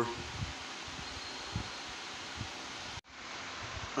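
Steady background hiss of room noise with a few faint, soft thumps, broken about three seconds in by a sudden dropout to silence at an edit before the noise returns.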